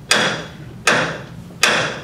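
Wooden gavel struck three times, about three-quarters of a second apart, each knock ringing briefly: the moderator's gavel formally sealing a motion just declared carried.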